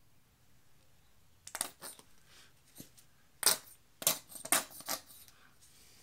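A run of sharp plastic clicks and taps from a small paint squeeze bottle being handled in gloved hands, starting about one and a half seconds in, the loudest about halfway through.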